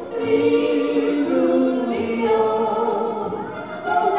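Two women singing a Swiss yodel song in harmony, with long held notes that step between pitches.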